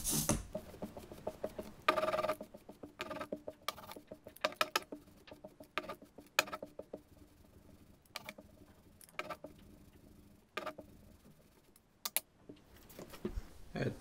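Ink roller (brayer) rolling printing ink over the slab and the foil plate: irregular sticky clicks and crackles, with a longer rolling rasp about two seconds in.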